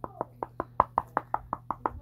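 Rapid, even knocking on the cover of a hardcover book, about five or six knocks a second, showing that the book is hardcover.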